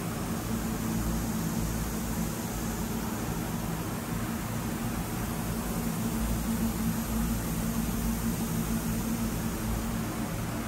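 Steady machine-room hum of a powered-up Haas VF2SS vertical machining center standing idle: cooling fans and drives running, with a low steady drone under a hiss.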